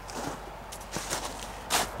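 Footsteps in snow, a few soft irregular steps with one louder crunch about three-quarters of the way through.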